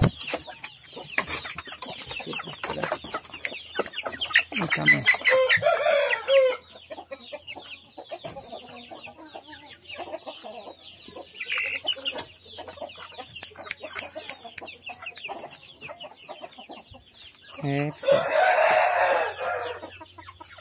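Young samurai-breed chickens clucking, with frequent small knocks and rustles as a bird is handled. Near the end a young cockerel crows once, a loud drawn-out call.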